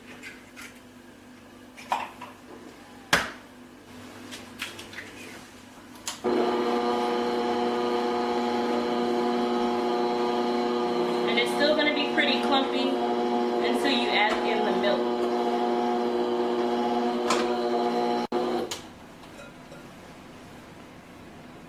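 Electric stand mixer switched on about six seconds in, its motor running with a steady whine as the beaters mix a thick cake batter in a glass bowl, then switched off shortly before the end. Before it starts there are a few sharp clicks and knocks.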